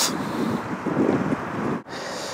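Wind buffeting the camera microphone, a rough low rumble, broken off by a short drop near the end.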